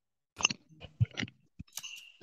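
A string of short, irregular clicks and crackles, some six to eight of them in two seconds, picked up over a video-call microphone.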